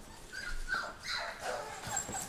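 Pointer-mix puppies whining, a few short high whines spread over the couple of seconds.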